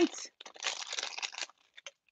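Plastic blind bag crinkling as it is pulled open and handled, with a few light clicks near the end.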